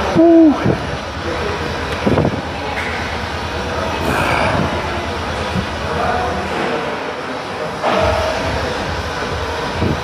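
A man's short 'ooh' exclamation at the start, its pitch rising then falling, followed by a steady background din with faint, indistinct voices.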